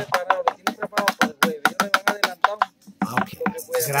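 Venezuelan cuatro being strummed in a quick, even rhythm, with a short break near the end before the playing picks up again.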